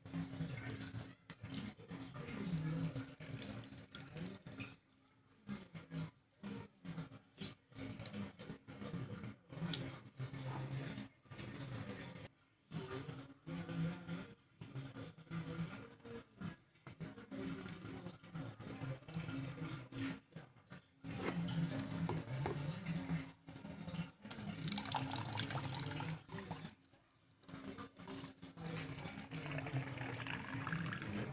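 A small child splashing and scooping soapy wash water in a plastic bucket with a measuring jug, in irregular stop-start splashes and trickles.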